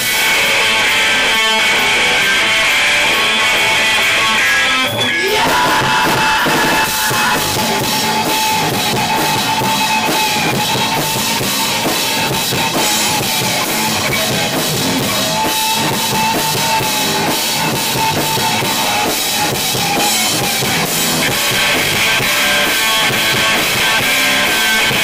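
Live rock band playing an instrumental stretch with no vocals: drum kit, bass and distorted electric guitar, the guitar holding long sustained notes through the middle.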